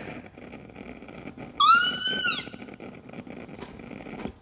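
A single short, high-pitched animal call, rising, holding and falling in pitch, about a second and a half in, over faint room noise.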